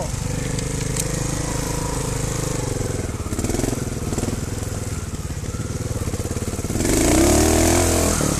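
Trials motorcycle engine running at low revs on a steady throttle, with a brief rise in revs about three and a half seconds in and a longer, louder rev-up near the end.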